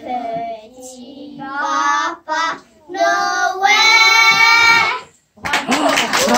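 Group of young children singing together in short phrases, ending on a long held note about five seconds in. Clapping breaks out just before the end.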